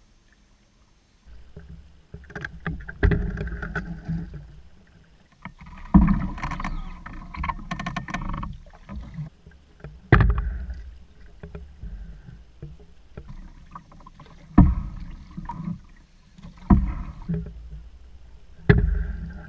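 Paddle strokes in an open canoe, heard through the hull-mounted camera: a sudden splash and knock with each stroke, about five strokes two to four seconds apart, starting about a second in, with water wash between them.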